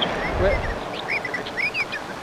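A quick scatter of short, high, bird-like chirps and squeaks, most of them in the second half, over a low steady background hiss.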